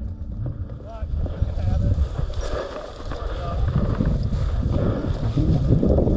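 Wind buffeting the microphone in gusts, with dry grass brushing as someone walks through a field.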